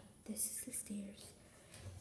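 A person speaking softly in a hushed voice, close to a whisper, in short bursts during the first second, then quieter.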